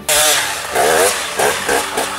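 Dirt bike engine revving, its pitch rising and falling repeatedly; it cuts in suddenly and loudly.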